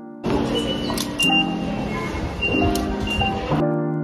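Background music over the noise of a busy station concourse, with several short electronic beeps from IC-card ticket gates as cards are tapped on the readers. The station noise stops abruptly about three and a half seconds in, leaving the music alone.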